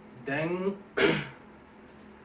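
A man gives a short murmur, then clears his throat once, sharply, about a second in.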